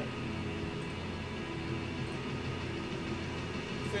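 Steady low background hum with faint sustained background music underneath.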